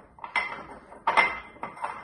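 Pestle grinding and knocking against a mortar, crushing tablets to powder: three or four sharp, ringing strikes with scraping between them.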